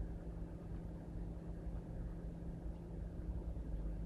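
Steady low hum and room noise, with no distinct event.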